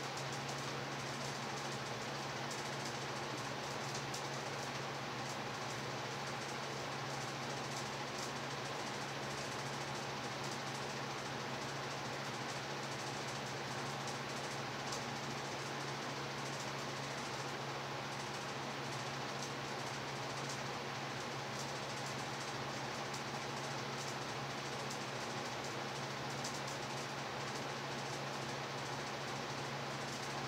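Steady whir of room fans and an air conditioner running, with a constant low hum under an even rushing noise.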